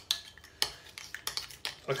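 A spoon stirring curried mayonnaise in a bowl: irregular clinks and knocks of the spoon against the bowl, several a second.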